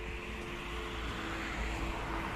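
Outdoor traffic noise: a vehicle passing, its noise swelling from about a second in, over a low rumble, with a faint steady hum.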